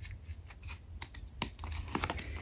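Oracle cards being fanned through by hand, their edges clicking and flicking against one another, with a couple of sharper card snaps in the second half.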